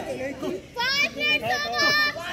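Young players' voices calling and shouting over one another during a kho kho game, with a high-pitched yell about a second in and another near the end.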